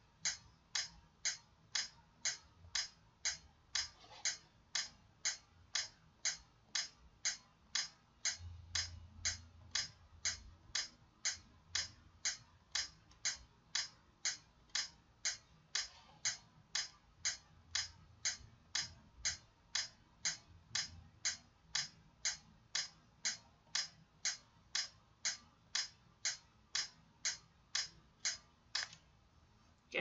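Metronome set at 60 beats per minute clicking steadily, about two clicks a second, stopping about a second before the end.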